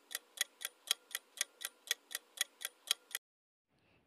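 Clock-tick sound effect of a quiz countdown timer, sharp even ticks at about five a second, stopping abruptly about three seconds in.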